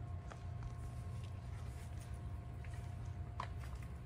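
Steady low mechanical hum with a faint steady tone over it, and a few soft clicks.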